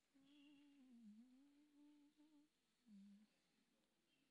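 A person humming faintly against near silence: one wavering note held for about two seconds, then a short lower hum about three seconds in.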